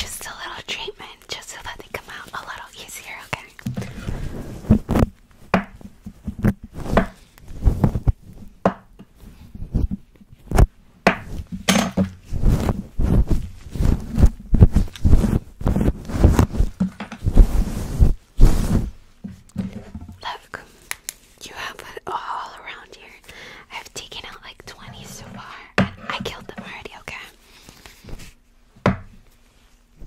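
Close-up ASMR whispering near the start and again in the last third. In between comes a dense run of quick thuds and scratches as hands and a plastic paddle hairbrush rub and tap against a furry microphone windscreen.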